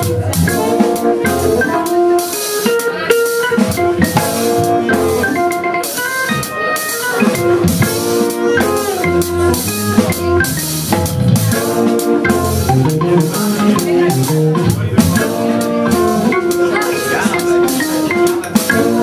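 Live jazz-blues band playing: Hammond XK-1 organ with organ bass, tenor saxophone and trombone over a drum kit, with sustained held notes and a steady cymbal-and-drum beat.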